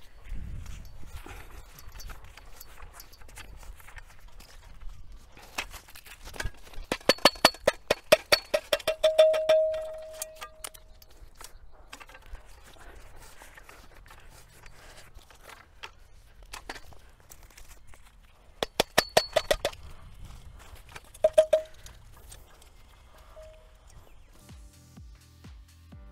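Hammer tapping the steel bucket of a hand soil auger to knock the soil sample out: a quick run of sharp metallic taps, several a second, ending in a short ring. A second, shorter run follows about ten seconds later, then a couple of single taps.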